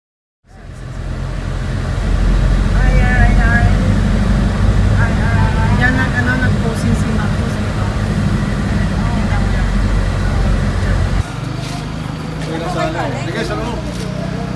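Car engine and tyre rumble heard from inside the cabin while driving, a loud steady low rumble with faint voices over it. About eleven seconds in it drops to quieter outdoor street sound with people talking.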